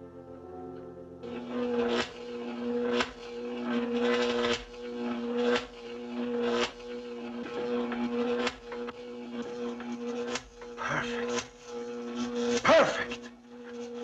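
Old film soundtrack: a brief music cue, then a steady electrical hum with sharp crackles about once a second, laboratory apparatus running. A voice is heard near the end.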